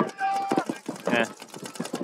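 Commentators' voices: a drawn-out held vowel in the first half-second, then short mumbled fragments of speech.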